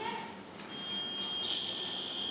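A high-pitched steady whistling tone comes in partway through and grows loud in the second half, with a fainter, lower steady tone under it.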